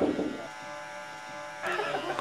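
Electric hair clippers running with a steady buzz, with a short burst of voice at the start and another brief louder sound near the end.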